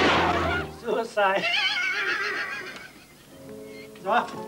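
Film soundtrack: the loud, noisy tail of a burst of gunfire fades in the first second, then a high, wavering cry with strong vibrato sounds over music and dies away to a quiet stretch near the end.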